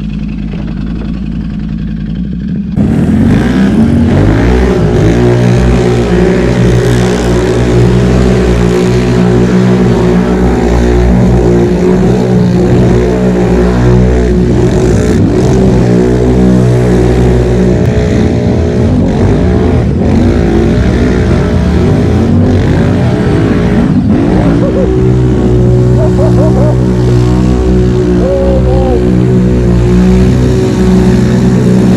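Can-Am Renegade XMR 1000R ATV's V-twin engine idling, then from about three seconds in running loud under heavy throttle, its revs climbing and dropping again and again as the quad churns through a deep mud bog.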